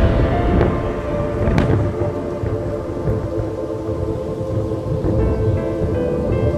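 Thunder rumbling with rain, under background music of sustained chords, with one sharp crack about a second and a half in.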